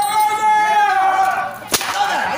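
A long held vocal cry, then a single sharp hand slap near the end: a comic stage slap landing during an on-stage beating.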